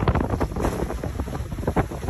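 Wind buffeting the microphone: a heavy, uneven low rumble with gusty crackle, over sea washing in the shallows.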